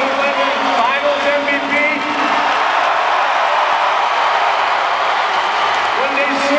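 Large arena crowd cheering steadily, with a few whoops and shouts in the first couple of seconds.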